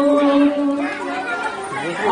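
A young man's amplified voice singing a naat: a long held note in the first second, then softer, with the next phrase sliding upward near the end.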